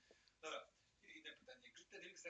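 Near silence with faint, low speech and a single short sharp noise about half a second in.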